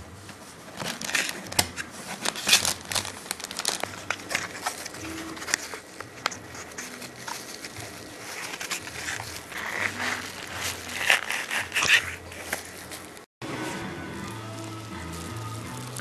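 Cardboard boxes and crumpled packing paper rustling and crinkling in irregular bursts as small boxes are lifted out of a shipping carton, over quiet background music. The sound cuts off abruptly a little after thirteen seconds, leaving only the music.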